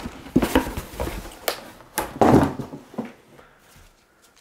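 A cardboard box being handled: a string of knocks, scrapes and rustles, the loudest a scraping rustle about two seconds in.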